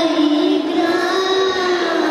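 A young girl singing into a handheld microphone, holding a long note that slowly falls in pitch.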